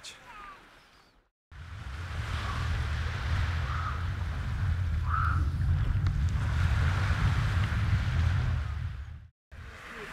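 Wind rumbling on the microphone over small sea waves washing onto a sandy shore, with a few faint distant voices. It starts about a second and a half in and cuts off shortly before the end.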